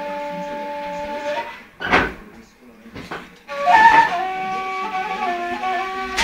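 Long end-blown flute played solo: a held note, a break with a short sharp noisy burst about two seconds in, then a stepping melody that resumes after about three and a half seconds.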